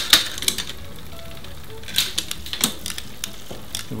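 Bicycle chain and derailleur gears turned by hand on a work stand, giving a handful of sharp, irregular clicks while the front derailleur is being set up to shift onto the second chainring.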